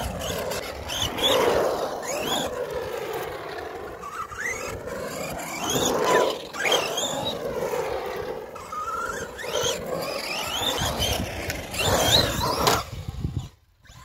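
Arrma Big Rock RC monster truck's electric motor whining, rising and falling in pitch with the throttle in several bursts, with its tyres scrubbing on concrete; it stops suddenly shortly before the end.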